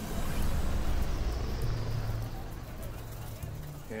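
Low machine rumble with a steady low hum, easing off somewhat after about two seconds: machinery running down as the power fails.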